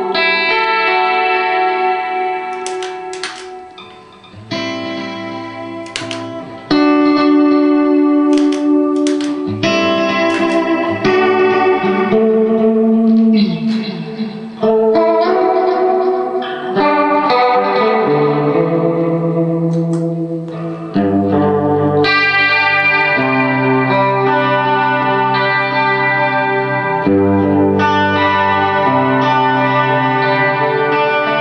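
Electric guitar played through an effects pedalboard: held chords and ringing notes. The playing drops away around four seconds in, then comes back fuller and louder from about seven seconds.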